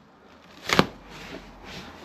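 Knife cutting through plastic stretch wrap: one short, sharp rip of plastic a little under a second in, then faint rustling of the film.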